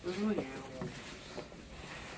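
A short utterance from a person's voice in the first half-second, then only faint, even background noise.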